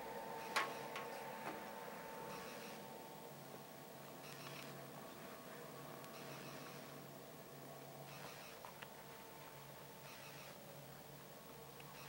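Quiet workshop room tone: a steady faint hum, with one light click about half a second in and soft hiss every two seconds or so.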